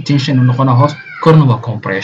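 A man speaking in a lecture.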